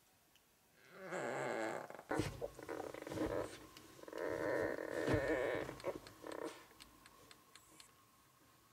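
Young bear cubs vocalising in their sleep: two long, raspy, drawn-out sounds, about a second in and about four seconds in, with shorter uneven ones between and after.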